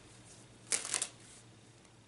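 Tarot cards being shuffled by hand: one short burst of card noise, about a third of a second long, just under a second in.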